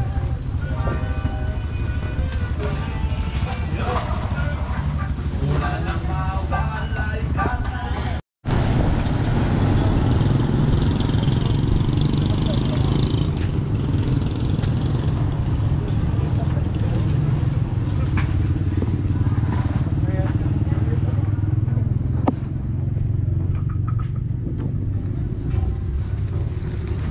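Busy outdoor market ambience. For the first eight seconds, music plays from a stall. After a brief dropout, a steady low rumble of street traffic continues with voices in the background.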